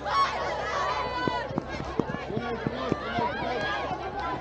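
Children shouting and calling out to each other, with one loud high-pitched shout in the first second, over general crowd chatter.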